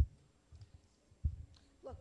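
Two dull thumps from a handheld microphone being handled, one sharp at the very start and a second a little over a second later, with faint knocks between them. A woman starts to speak just before the end.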